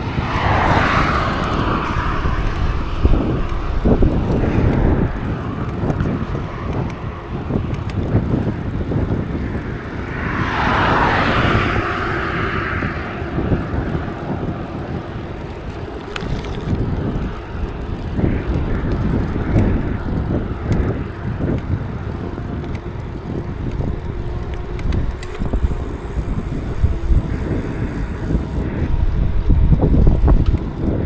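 Wind buffeting the microphone of a camera on a moving bicycle, over the low rumble of tyres rolling on the cycle path. Two louder rushing swells come through, one near the start and one about ten seconds in.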